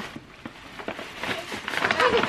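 Glossy paper gift bag rustling and crinkling in irregular crackles as a present is pulled out of it.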